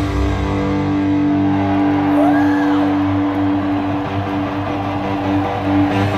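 Live hard-rock band playing in an arena, led by electric guitar. The guitar holds one long sustained note through most of the stretch, with a short bend up and back down near the middle.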